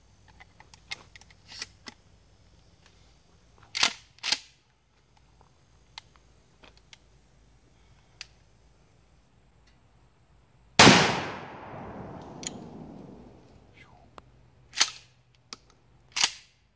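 Remington Tac-14 pump-action shotgun: light clicks as a shell is loaded, then two sharp clacks of the pump being racked about four seconds in. A little past the middle comes one loud shot of homemade buckshot with a long, fading echo. Near the end the pump clacks again, cycling out the spent shell.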